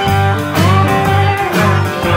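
Live band playing an instrumental passage: guitar lines, with one bent note about half a second in, over a low note pulsing about twice a second.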